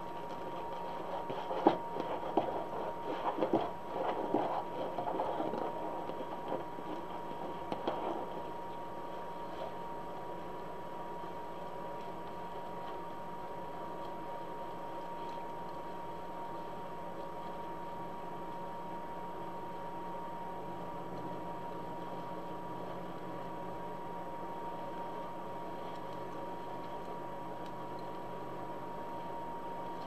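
Poly deco mesh rustling and crinkling as it is handled and fluffed into ruffles, with a sharp click about two seconds in. The handling stops after about eight seconds, leaving a steady background hum with a thin, high whine.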